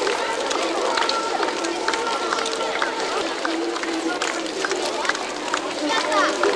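Babble of a large crowd of adults and children talking at once, no single voice standing out, with scattered short clicks.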